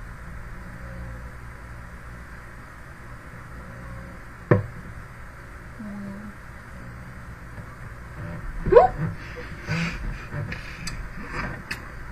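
Steady low hiss of a webcam microphone in a small room, broken by one sharp knock about four and a half seconds in. Near the end a girl's voice gives a short rising sound, the loudest moment, followed by a few scattered vocal noises.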